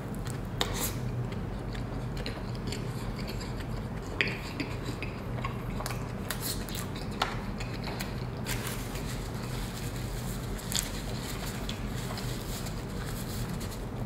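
A person biting into and chewing a large burger: soft chewing and mouth sounds with a few scattered sharper clicks, over a steady low hum.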